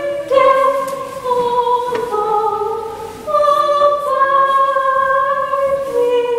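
A woman's voice singing a slow melody in long, held notes that step from pitch to pitch, with a short break about three seconds in.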